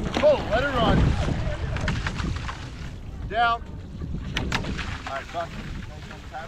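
Wind buffeting the microphone and water rushing past a quad sculling boat being rowed hard, with a couple of sharp knocks from the oars about four and a half seconds in and brief shouts without clear words.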